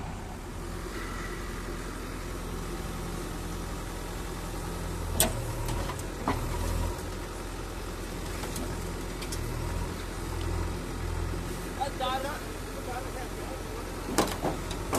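JCB backhoe loader's diesel engine running steadily at low revs, with two sharp knocks about five seconds in and a second later.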